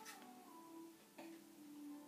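Faint electronic tune from a baby's plastic activity walker toy, single steady notes stepping in pitch, with a couple of short clicks.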